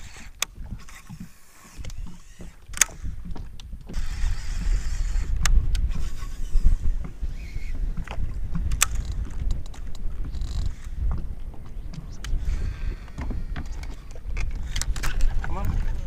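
Gusty wind buffeting the microphone on an open boat, an uneven low rumble that grows louder about four seconds in, with a few sharp clicks.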